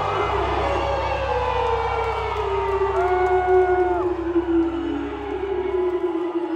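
Live band music with acoustic guitar and a steady low bass, with one long note slowly falling in pitch, and the concert crowd cheering and whooping.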